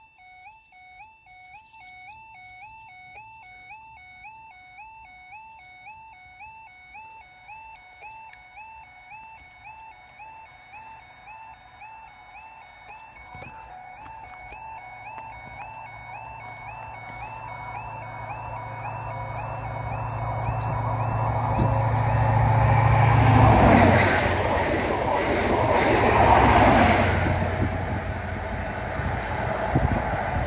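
A footpath level crossing's miniature stop light warning sounds a quick, repeating warble while the red light shows for an approaching train. An InterCity 125 HST led by power car 43177 then grows steadily louder and passes close by, loudest twice in the last quarter as the power cars at each end go past.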